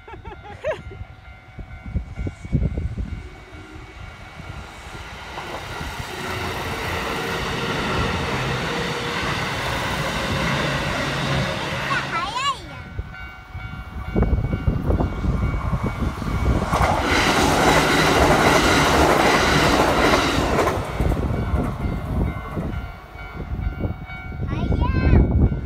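A Japanese level-crossing alarm rings steadily while Kintetsu electric trains pass over the crossing. Wheel and rail noise builds from a few seconds in, drops briefly, then returns louder from about the middle until a few seconds before the end.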